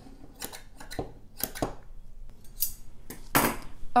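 Scissors snipping off the loose thread tails at the corners of sewn swimsuit pieces: a series of short, crisp snips, several strokes spaced out through the few seconds.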